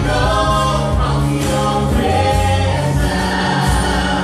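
A worship band playing a song live: a woman sings lead through a microphone over steady bass notes, keyboard and a beat from a cajon.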